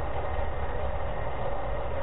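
Steady background hiss with a low hum: the noise floor of an old lecture recording, heard in a pause in speech.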